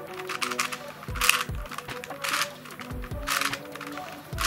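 Plastic twisty puzzle (MF8 Crazy Unicorn, a cube-shaped puzzle) being turned in quick random quarter turns, its layers clicking and clattering in repeated short bursts. Background music plays underneath.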